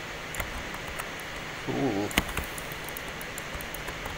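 Steady background hiss of a desk microphone, with a short hummed 'mm' from the speaker about halfway through and a sharp mouse click just after it.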